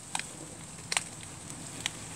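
Three light clicks about a second apart from the phone being handled, over a steady faint hiss.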